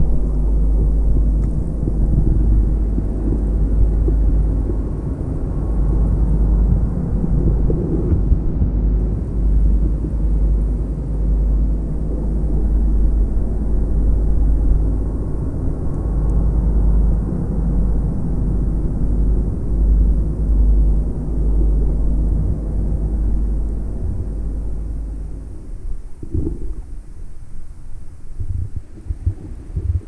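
Muffled underwater rumble of water moving around a camera in a waterproof housing, with a low steady hum under it. About 26 s in it turns quieter and choppier.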